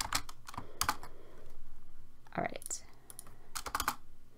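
Computer keyboard being typed on: a few separate keystrokes in the first second, then a quick run of key clicks near the end as code is entered and run.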